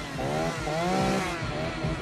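Gasoline chainsaw revving, its engine pitch swooping up and down twice.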